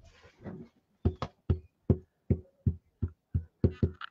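A cling rubber stamp on a clear acrylic block and a black ink pad being tapped together again and again to ink the stamp: about ten quick knocks, roughly three a second, starting about a second in.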